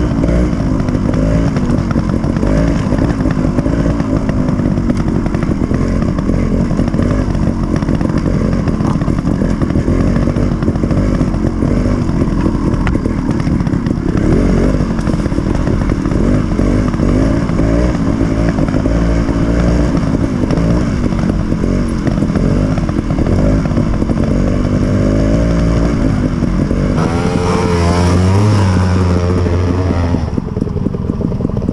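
GasGas TXT 250 two-stroke trials bike engine running while riding, its pitch rising and falling with the throttle. About 27 seconds in the sound changes to an engine revving harder, pitch swinging up and down.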